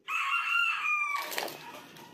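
A rooster crowing: one long call of about a second that holds its pitch and then drops a little at the end.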